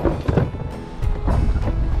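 Wind buffeting the microphone in a low rumble, with choppy seawater sloshing around a kayak, over background music.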